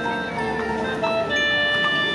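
High school marching band playing live: held wind chords with notes changing above them.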